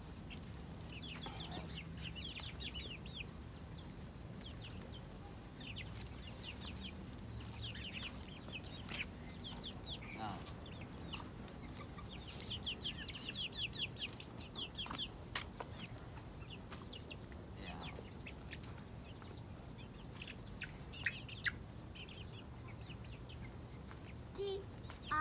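Young black chicks peeping in scattered bursts of short, high, downward-sliding calls, busiest about halfway through, as they crowd in to peck at food. A few sharp clicks stand out over a steady low background hum.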